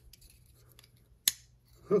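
Faint ticks of a small Torx driver turning a screw into a folding knife's handle scale, then one sharp metallic click just past halfway.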